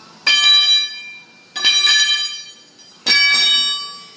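A long 709 alloy-steel shaft, tie-rod bar stock, hitting the concrete floor three times, about a second and a half apart. Each hit rings out like a bell, with several high pitches that fade over about a second.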